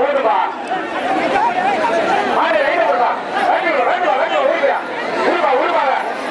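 A large crowd of spectators talking and shouting all at once, many voices overlapping into a steady loud din.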